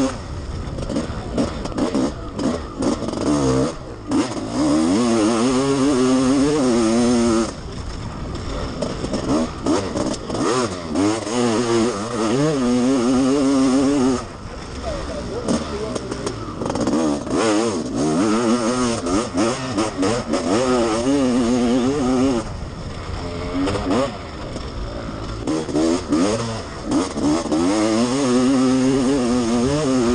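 Honda CR500's single-cylinder two-stroke motocross engine heard onboard under racing load, held wide open then chopped several times for corners, its pitch climbing and falling with the throttle.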